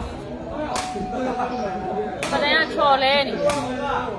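Sepak takraw ball kicked during a rally: three sharp smacks over the few seconds. Voices around the court, with one wavering shout between the second and third kicks.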